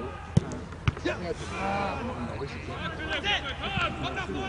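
Two sharp thuds of a football being kicked, about half a second apart early on, over voices calling across the pitch.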